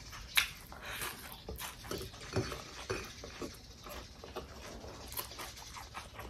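Close-miked eating sounds: chewing fried quail and rice, with wet lip smacks and irregular small clicks.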